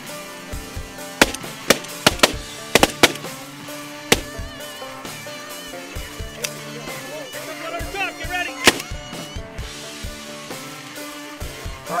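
A volley of shotgun shots, about seven sharp blasts in the first four seconds and a single one near nine seconds, over background music.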